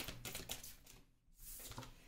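Faint handling of tarot cards on a wooden table: a light tap at the start, then soft sliding as a card is drawn from the deck. The sound briefly drops to silence about a second in.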